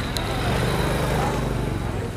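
Steady low rumble of a vehicle engine running, over street background noise.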